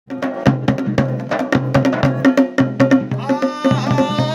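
Garhwali dhol and damau drums played together in a quick, driving rhythm of sharp strokes. A little after three seconds in, a man's voice comes in singing over the drums.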